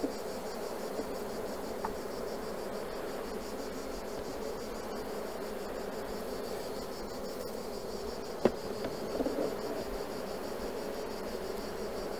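Honeybees buzzing steadily from an open hive, a continuous hum, with a single sharp knock about eight and a half seconds in as the wooden frames are handled.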